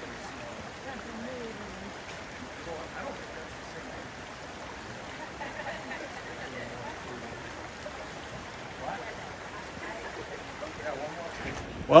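Steady rush of a forest creek, with faint low voices now and then.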